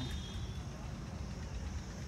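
Outdoor background noise: a steady low rumble with a steady high-pitched insect drone above it.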